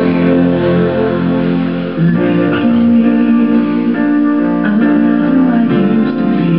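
A pop song playing back from a CD, with guitar prominent over sustained chords.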